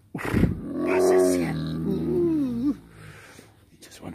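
A tiger giving one low, pitched call of about two and a half seconds. It opens with a rough burst, and its pitch wavers and bends near the end before it stops.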